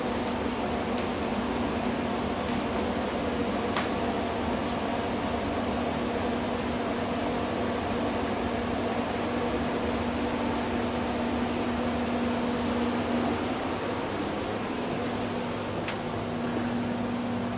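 Blower-door fan running steadily, depressurizing the house for an air-leakage test: an even fan rush with a low steady hum that drops out briefly near the end, and a few faint clicks.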